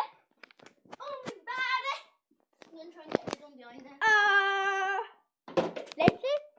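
Children talking and calling out, with one long held vowel for about a second a little after the middle, and a few knocks.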